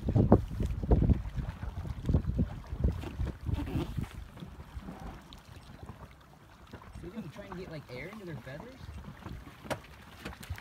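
Wind buffeting the microphone and choppy water lapping against a small boat, gusty and uneven, dying down about halfway through. Faint, indistinct voices come in during the last few seconds, and there is a single sharp knock near the end.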